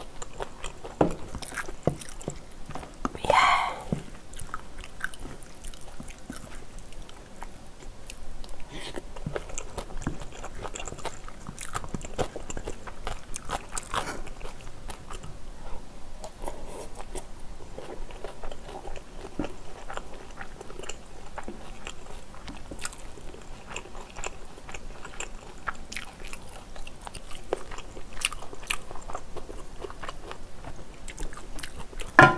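Close-miked chewing and biting of spicy stir-fried squid and pork belly (osam bulgogi) with glass noodles: wet mouth sounds and many small clicks. There is one louder noise about three seconds in.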